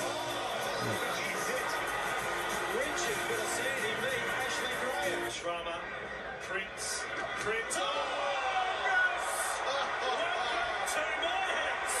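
Background music with a voice talking over it, as from a rugby league highlights broadcast.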